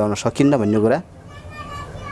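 A man speaking for about the first second, then a faint, high-pitched call in the background, held for about half a second and dropping in pitch at its end.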